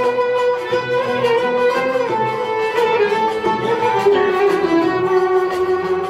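Instrumental interlude of Turkish classical music in makam hicaz: plucked kanun and oud under a melody of long held notes that moves step by step.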